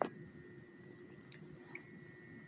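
One brief splash at the very start as a bass is let go from the hand into the water.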